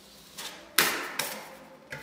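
Metal drywall knife scraping joint compound along an inside drywall corner in a few quick strokes, each starting sharply and fading fast. The loudest stroke comes just under a second in.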